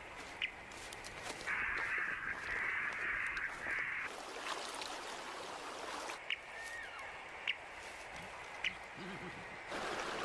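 A harsh bird call lasting about two and a half seconds, followed later by a few short high pips about a second apart.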